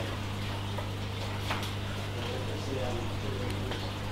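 A steady low hum with a faint hiss over it, and a couple of faint short ticks.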